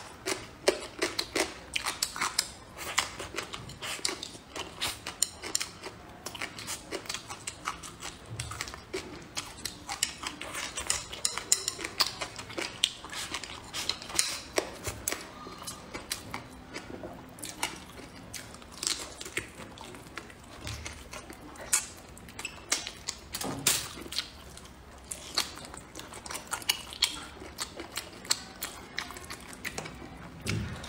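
Close-miked chewing and biting of braised pork trotter, heard as a constant run of short, irregular mouth clicks and smacks.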